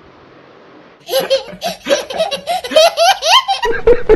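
After a quiet second, loud high-pitched laughter breaks out, rising and falling in pitch. Near the end it gives way to a man's hearty laugh in short, even bursts, about four a second.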